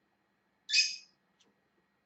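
A pet parrot giving one short, high-pitched squawk a little before the middle.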